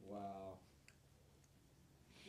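Near silence in a quiet room: a brief, soft murmur of a voice in the first half second, then two faint clicks.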